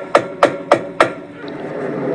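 Knuckles knocking on a front door: four sharp, evenly spaced knocks, about three a second, stopping about a second in. A steady low hum carries on after them.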